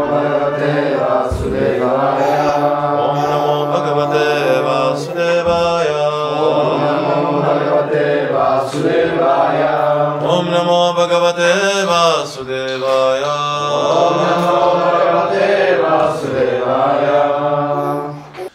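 A man chanting Sanskrit invocation prayers in a continuous melodic line over a steady low held tone, the opening mantras before a Bhagavatam reading.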